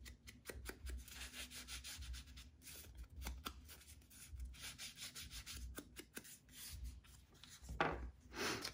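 A foam ink blending tool rubbed in many short, faint, scratchy strokes along the edges of a paper strip, inking and distressing them.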